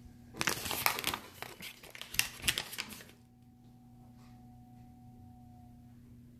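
Crinkling and rustling with many small clicks for about two and a half seconds, then a faint steady tone.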